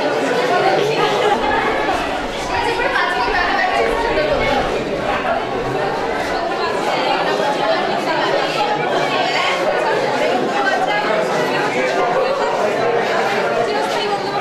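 Many people talking at once in a room, a steady, unbroken chatter of overlapping voices with no single speaker standing out.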